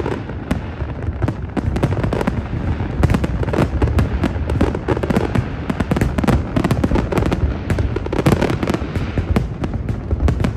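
Aerial fireworks display: shells bursting in a rapid, unbroken run of overlapping bangs and crackles over a deep, continuous rumble.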